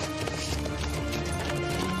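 Horse hooves clip-clopping on the ground at an irregular pace, over a music score of held notes.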